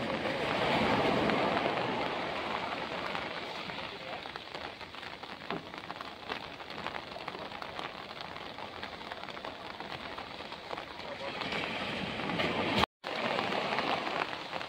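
Steady rain, with many small ticks of raindrops hitting an umbrella close overhead.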